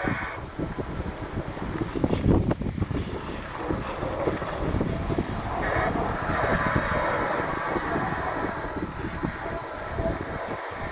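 Wind buffeting the microphone on a moving Cyrusher Ranger fat-tyre e-bike, over the low rumble of its fat tyres rolling across a rough grass track. A stronger gust comes about two seconds in.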